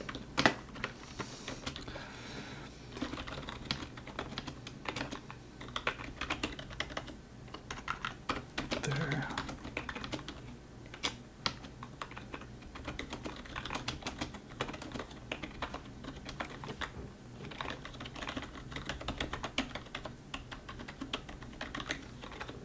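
Typing on a computer keyboard: irregular runs of quick keystrokes with short pauses between them.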